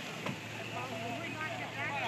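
Faint voices talking in the background over a steady low hum and outdoor noise, with one brief click just after the start.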